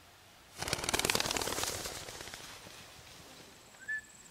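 A homing pigeon's wings flapping rapidly as it is thrown and flies off, starting about half a second in, loudest around a second in and fading over the next two seconds. A brief high chirp near the end.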